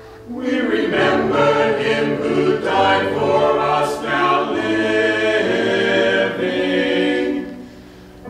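Small mixed church choir of men's and women's voices singing a choral anthem. The voices come in together just after the start following a brief hush, and pause for a breath near the end.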